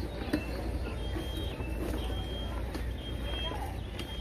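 Outdoor background noise: a steady low rumble with faint voices and a thin high-pitched tone that recurs about once a second.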